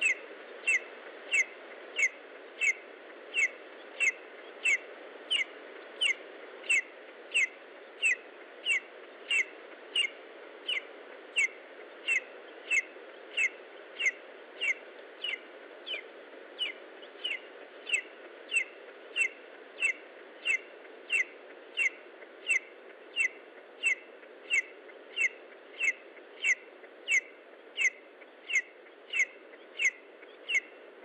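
A lesser spotted eagle chick calling over and over: one short, falling, high note about one and a half times a second, very regular, over a steady low hiss.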